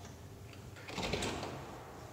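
Faint handling noise of a CO2 incubator's inner glass door as its knob latch is turned and the door is eased open, swelling about a second in and then fading.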